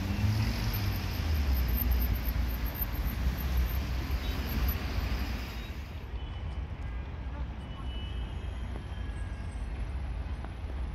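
Road traffic: vehicle engines and tyres passing with a low rumble, louder in the first half and falling away about six seconds in.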